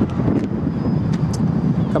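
Steady low outdoor rumble, uneven and gusty, with a few faint clicks about a second in.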